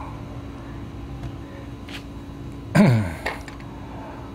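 A man's short wordless vocal sound, falling in pitch, about three seconds in, over a steady low hum.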